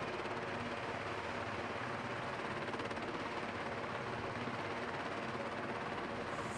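CH-47 Chinook tandem-rotor helicopter running its rotors and twin turboshaft engines as it sets down on a runway, a steady even noise that does not change.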